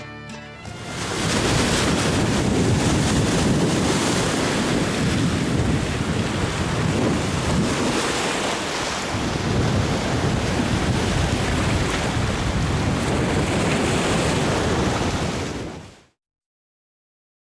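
A steady rush of ocean surf and breaking waves, which cuts off abruptly at the very end. The last notes of a country-style tune die away in the first second.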